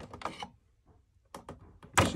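Small plastic clicks from handling a Keurig's internal rubber water tube and check valve: a few light clicks about a second and a half in, then a sharp click at the very end.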